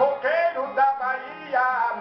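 A man singing a verse of Northeastern Brazilian repente in a drawn-out, gliding melody, with a plucked viola accompanying.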